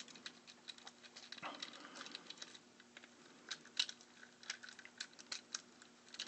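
Faint, irregular small clicks and taps of hands handling a 3D printer's plastic-and-metal extruder head while working at its tension-spring screws.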